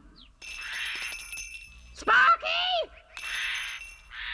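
Cartoon doorbell buzzer sounding twice as the button by the door is pressed, with a brief vocal sound from the character between the two rings.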